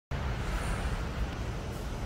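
Steady low background rumble with an even hiss above it.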